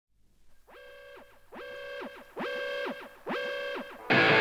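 Opening of a heavy metal track: four rising-and-falling pitched swoops from an effected electric guitar, each sliding up, holding briefly and sliding back down, each louder than the last.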